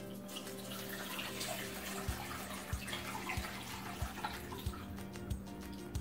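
Water pouring in a steady stream from a glass pitcher into a stainless steel bowl. Background music with a soft low beat about every two-thirds of a second runs underneath.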